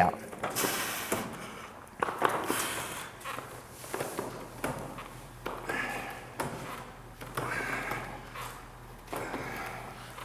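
Plate-loaded lying hamstring curl machine worked through steady reps, its lever arm clunking and rubbing softly, with the lifter's breaths rising and falling about every two seconds in time with the curls.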